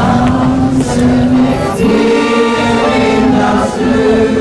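An amateur social choir singing long held notes in chorus, moving to a new chord about two seconds in.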